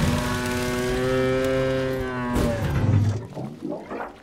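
A film sound effect: one long, steady, pitched call or honk lasting about two and a half seconds, dipping slightly at its end. It is followed by shorter wavering pitched sounds near the end.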